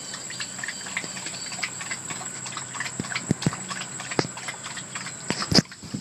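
Irregular light clicks and knocks outdoors over a steady high-pitched whine, with a few faint chirps early on; near the end comes a louder rustle and knock of the phone being handled.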